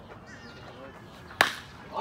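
Baseball bat striking a pitched ball: one sharp crack with a short ring about one and a half seconds in. It is the solid contact of a ball driven into the gap for a double.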